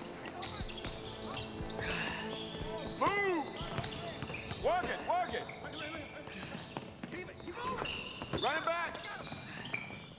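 Basketball practice on a hardwood court: a ball bouncing and passed about, with sneakers squeaking in quick sharp chirps, loudest about three, five and eight and a half seconds in.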